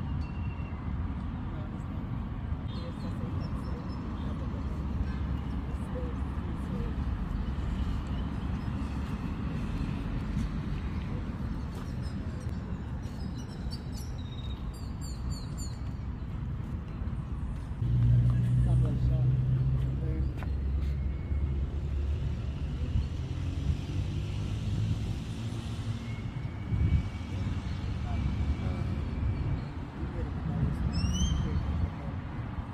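Steady low rumble of road traffic, swelling a little past halfway as a heavier vehicle with a low engine hum passes. A few short bird chirps come near the middle.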